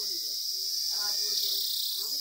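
Cicada singing: a loud, steady, high-pitched buzz that swells slightly near the end.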